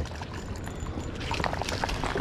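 A hooked trout thrashing and splashing at the water's surface close to the bank, with a burst of irregular splashes in the second half.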